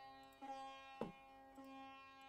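Faint sitar music: a few plucked notes over steady held tones.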